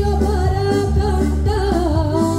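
A woman singing, accompanied by her own piano accordion.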